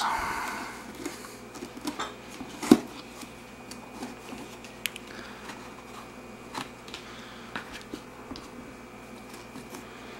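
Handling noise from a leatherette travel cocktail case: a soft brushing at first, one sharp knock a little under three seconds in, then scattered light clicks and taps as the door and contents are fiddled with.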